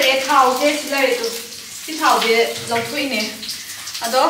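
A woman talking, over a steady background sizzle of food frying in a wok.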